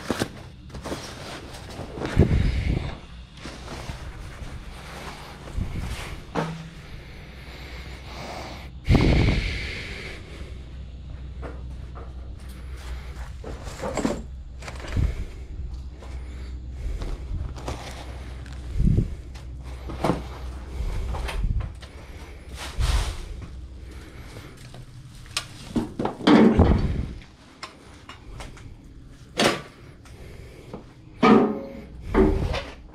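Stored camping gear and household clutter being lifted, shifted and put down by hand: irregular knocks and thuds with handling rustles, the heaviest thuds about two seconds in, about nine seconds in and near the end.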